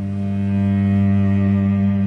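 Background music: a low sustained note held steady, with fainter higher tones above it.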